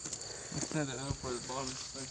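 Insects chirring steadily at a high pitch, with a faint voice speaking briefly near the middle.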